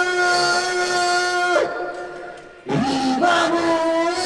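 A man singing badly off-key into a microphone: one long high note held about a second and a half that breaks off, then after a short gap a new note sliding up into pitch.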